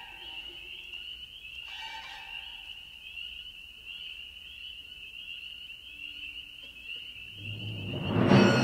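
A chorus of spring peepers, the tiny tree frogs, peeping in a steady high-pitched trill. A brief high orchestral chord sounds about two seconds in, and low orchestral notes swell in near the end.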